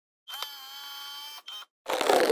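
Logo intro sound effect: a bright ringing tone lasting about a second, with a click just after it starts. Near the end a louder, noisier swoosh-like hit begins.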